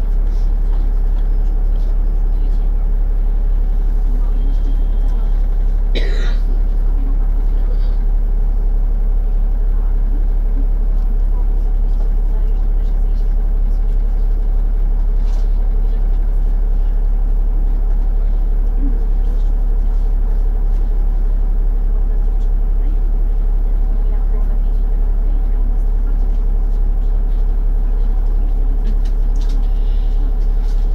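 Single-deck bus's diesel engine idling steadily while stationary at a red light, heard from inside the passenger cabin as a constant low hum. A short squeak comes about six seconds in.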